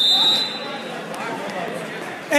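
A referee's whistle blowing one long steady high blast, cutting off about half a second in, over gym crowd chatter.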